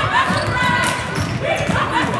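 Basketballs bouncing repeatedly on a hardwood gym floor, with voices and chatter echoing in the large gym.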